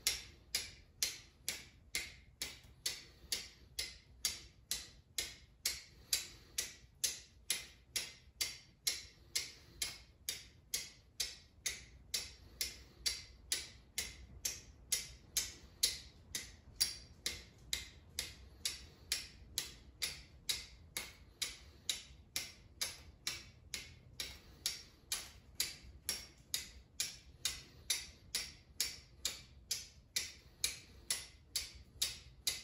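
A flint-and-steel steel striker hitting the same edge of a small chert flake again and again: sharp, evenly paced metallic clicks, about two strikes a second.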